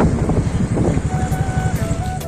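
Wind buffeting the microphone of a TVS Ntorq scooter riding slowly, a dense low rumble. Background flute music comes in about a second in.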